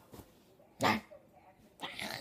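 A dog gives one short, loud bark-like vocal about a second in, then starts a rougher run of play noises near the end, while being wrestled with in play.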